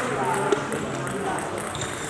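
Murmur of voices echoing in a sports hall, with a single sharp click of a table tennis ball about a quarter of the way in.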